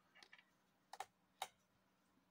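Near silence broken by a few faint ticks, then three sharper small clicks between about one and one and a half seconds in, from a crochet hook and fingers working cotton yarn.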